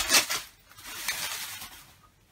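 Rustling and rubbing as a guitar is handled and lifted out of its hard case, loudest in a short burst at the start and then fainter.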